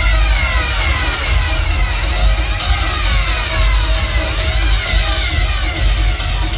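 Dub reggae played loud through a sound system, heavy bass under it, with a siren effect sweeping down in pitch again and again over the music.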